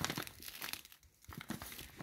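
Faint, irregular crinkling and rustling of a large plastic bag of granulated sugar being handled, easing off briefly about a second in and then picking up again.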